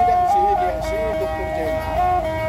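Two sundatang, Sabah long-necked lutes, being plucked together in a repeating melody. One sustained high note holds steady and steps briefly up and back, while shorter notes move beneath it.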